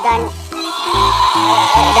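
A simple electronic tune of plain, stepped notes, one held note after another with short gaps between them.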